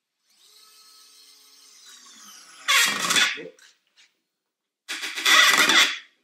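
DeWalt DCF680 8V gyroscopic cordless screwdriver running as it drives a screw into wood, its motor whine sagging a little in pitch as the load builds. Two loud, harsh bursts follow, about three and five seconds in.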